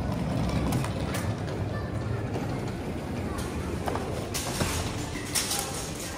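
Busy indoor ambience: indistinct background voices over a steady low rumble, with a few brief bursts of hiss in the second half.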